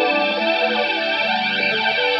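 Teisco Spectrum 5 electric guitar played through a chain of effects pedals: layered held notes with distortion and a sweeping effect running through them.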